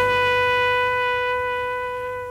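A brass horn holds one long, steady note that slowly fades, following a run of short, bent notes.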